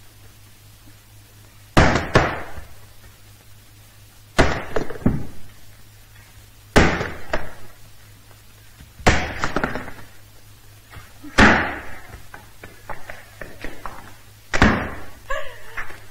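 Axe blows into a wooden chopping block, six strikes about two and a half seconds apart, each with a short rattle of knocks after it as the wood is split.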